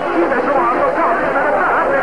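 A crowd of voices shouting and chattering over one another during a scuffle, a continuous loud hubbub with no single voice standing out.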